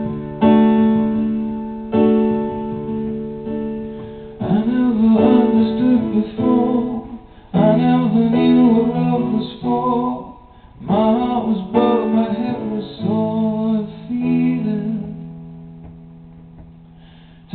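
Live solo piano playing sustained chords, joined from about four seconds in by a man singing the melody over them; the last chord rings and fades near the end.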